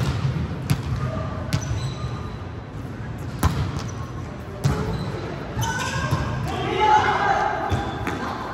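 Indoor volleyball rally: a few sharp smacks of the ball being hit and passed in the first half, then players calling out to each other, loudest near the end, all echoing in the large gym.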